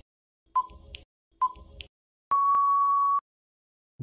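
Quiz countdown timer sound effect: two short ticking beeps about a second apart, then one long steady beep of about a second that marks time up.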